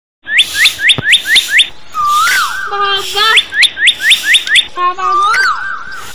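A loud, chirpy whistling sound effect: quick rising chirps about four a second, then warbling whistles that rise and fall over a lower stepping tone. The run repeats twice.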